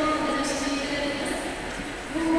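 Voices holding long sung notes, choir-like, one steady pitch with its overtones, dipping slightly near the end.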